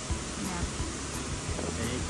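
Steady rushing of a nearby creek's flowing water, an even hiss.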